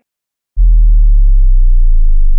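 A loud, deep electronic bass tone that starts suddenly about half a second in and slowly falls in pitch: a sub-bass drop sound effect.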